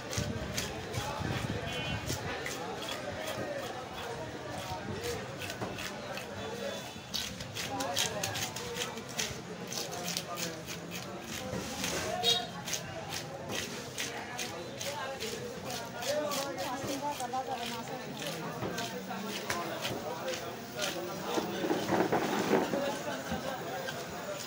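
Quick repeated scraping strokes of a nail-studded wooden fish scraper across a large rohu's scales, tearing them off the skin, with voices talking alongside.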